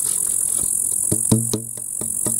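Knocks and taps on a homemade wooden box didgeridoo as it is handled. Several sharp hits come about a second in, each with a brief low ring from the box. Grasshoppers chirr steadily behind them.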